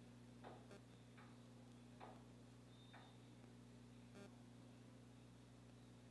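Near silence: room tone with a faint steady low hum and a few faint, scattered small clicks.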